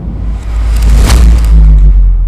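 Logo-animation sound effect: a loud, deep rumble with a rushing whoosh that swells and peaks about halfway through, its high end then fading away.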